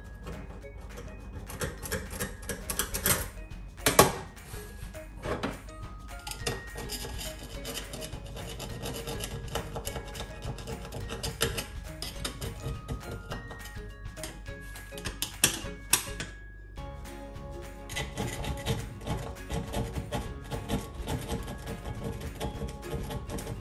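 A small brush scrubbing and scraping a soapy stainless-steel gas hob in repeated rubbing strokes, the sharpest about four seconds in and again near sixteen seconds, over background music.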